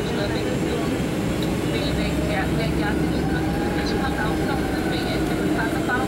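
Steady cabin noise of a Boeing 757-300 taxiing, with the engines at idle: a low rumble and a faint whine that drifts slightly in pitch through the middle.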